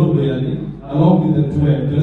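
A man's voice speaking, with drawn-out syllables: speech only.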